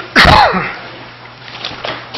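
A person's single loud, abrupt cough-like expulsion of breath, about a quarter second in, ending in a falling voiced tail. It is very close to a microphone.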